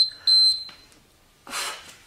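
Workout interval timer beeping, high and electronic: the end of one beep and a second short beep, signalling the start of an interval. About a second and a half in comes a sharp exhale as the exercise begins.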